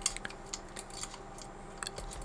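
Small plastic clicks and ticks of jumper-wire connectors being handled and pushed onto an Arduino board's pin headers, a few sharp ones scattered through and a quick cluster near the end.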